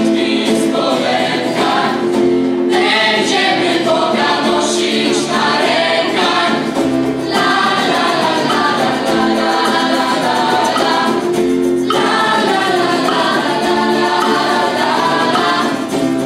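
A youth choir of girls and boys singing a song together to acoustic guitar accompaniment. The singing is steady, with brief breaks between phrases roughly every four to five seconds.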